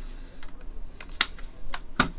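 A few light, sharp clicks and taps at uneven intervals, about five in two seconds.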